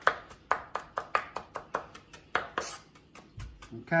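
Knife chopping fresh cilantro on a wooden cutting board: quick, even strokes, about four to five a second, thinning out near the end.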